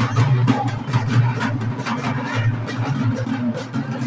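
Drums beating a fast, steady rhythm, about three strikes a second, over the noise of a large crowd.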